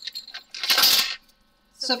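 A brief clatter and rustle of light plastic, about half a second long in the middle, as a white plastic diamond-painting sorting tray is grabbed and brought in.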